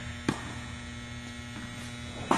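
A single sharp impact of a tennis ball, struck or bouncing, about a quarter of a second in, over a steady electrical hum.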